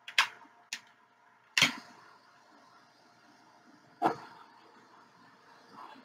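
A handheld butane torch being clicked to light: several sharp clicks and pops, the loudest about one and a half seconds in and another about four seconds in, with a faint steady hiss of flame between them.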